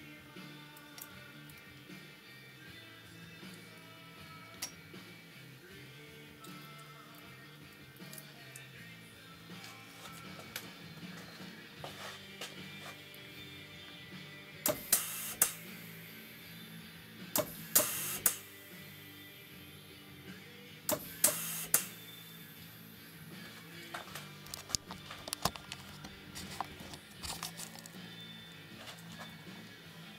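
Background music throughout. About halfway through, three loud, sharp double bursts about three seconds apart: a pneumatic air cylinder's piston shooting out and back as its valve switches, one cycle per push of the button, with smaller clicks after them.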